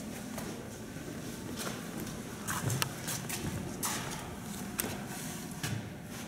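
Irregular footsteps and light knocks over a low steady hum, several sharper knocks clustered about two and a half seconds in.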